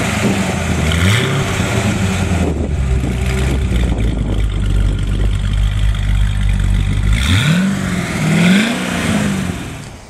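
The 7.0-litre LS7 V8 of a 2008 Corvette Z06 with an aftermarket performance camshaft, heard at its quad exhaust tips. It is revved once about a second in and idles steadily for a few seconds. Near the end it is blipped twice more, then dies away.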